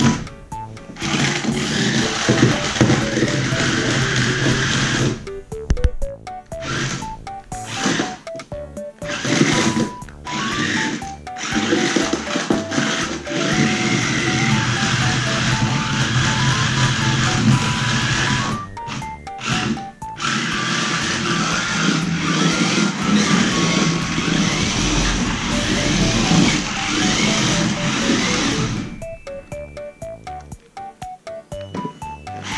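Background music with a simple stepping melody. Under it is the whirring of a toy RC stunt car's small electric motors, cut off abruptly several times.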